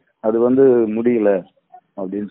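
A man's voice over a phone line, holding one drawn-out sound for a little over a second before falling silent.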